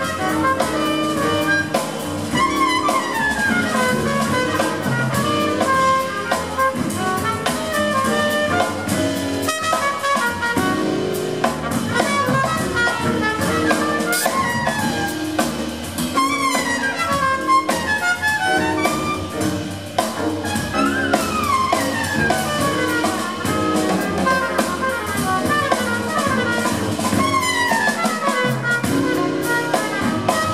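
Live small-group jazz: trumpet leading with fast downward runs over piano, double bass and drum kit, with a tenor saxophone joining near the end.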